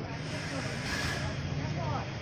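Indistinct voices of people over a steady outdoor background noise, with a short hiss about halfway through.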